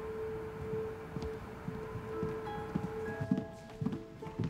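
Soft background music of held, chime-like notes, one long note joined by higher ones a couple of seconds in, with footsteps beneath it.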